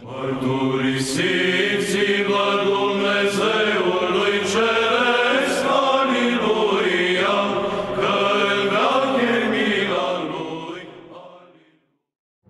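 Sung chant of voices as closing theme music, held notes gliding between pitches, fading out near the end.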